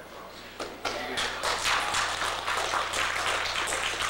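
Audience applauding in a large hall, breaking out about a second in.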